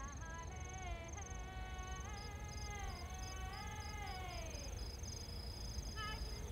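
A slow melody of long held notes that slide from one pitch to the next, fading out near the end, over crickets chirping: a steady high trill plus short chirps about three times a second.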